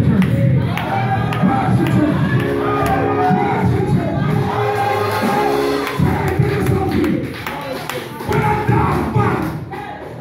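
A man's voice preaching loudly through a handheld microphone over church music with sustained chords, and the congregation calling out in response.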